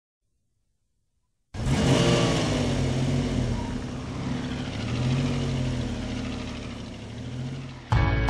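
Car engine running and revving, its pitch rising and falling in slow sweeps. It starts abruptly about a second and a half in and eases off toward the end.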